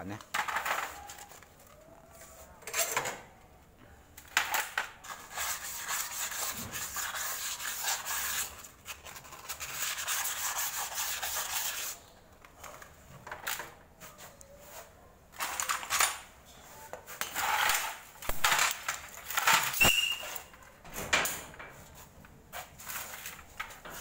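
Rubbing and scrubbing inside a motorcycle wheel's drum-brake hub to clean out brake dust, which causes the squeal. A steady rubbing runs for several seconds in the middle, with scattered knocks and scrapes as the wheel is handled.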